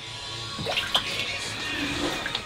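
Water sloshing and splashing softly as a hand moves through the cold water of a chest-freezer cold plunge tub.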